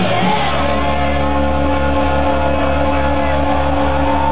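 Loud dance music from a DJ's decks over a club sound system, with a heavy steady bass coming in just after the start and the crowd shouting over it.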